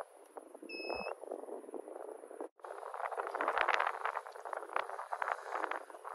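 Thunderstorm wind and rain on a phone's microphone: a dense, crackling noise that thickens in the second half. There is a short electronic beep about a second in, and the sound cuts out for a moment midway.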